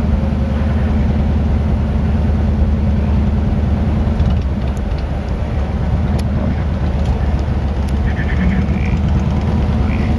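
Steady low rumble of a car's engine running at idle, heard from inside the vehicle.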